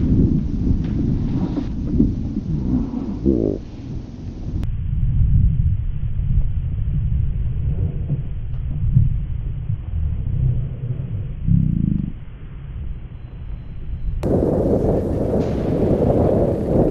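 Wind buffeting a bicycle camera's microphone, heard as a deep, steady rumble; the audio is slowed down for much of the stretch, which deepens the rumble further.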